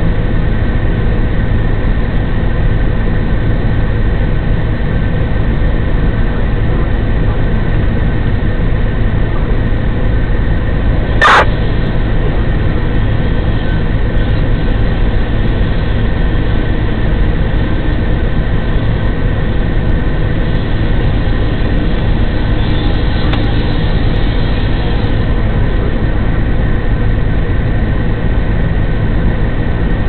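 Fire engine's diesel running steadily at pump speed, a loud, even drone with a few steady tones, as it supplies a charged hoseline. A single sharp click about eleven seconds in.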